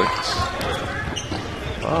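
A basketball dribbling on a hardwood court, over arena background chatter.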